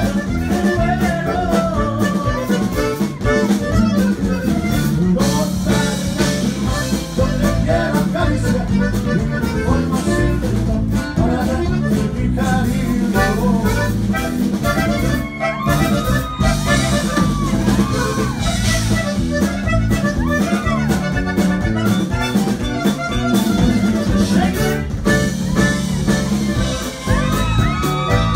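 Live Tejano band music led by a button accordion, with bass guitar, guitar and drums playing along.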